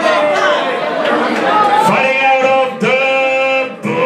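A man's voice drawing out two long held calls in the middle of the moment, over crowd chatter in a hall, typical of a ring announcer stretching out the winner's announcement.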